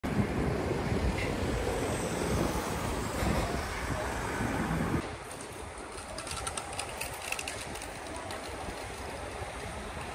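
City street ambience: a steady traffic rumble for the first half that drops off suddenly about halfway in, leaving a quieter street background with a brief run of light ticks.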